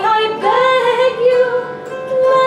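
A woman singing a melody while accompanying herself on an early Irish wire-strung harp, the plucked metal strings ringing on under her voice. Her voice slides up into notes at the start and again about half a second in.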